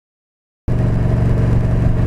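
Silence, then about two-thirds of a second in the sound cuts in abruptly: the Yamaha V Star 1300's V-twin engine running steadily as the motorcycle rides along a road.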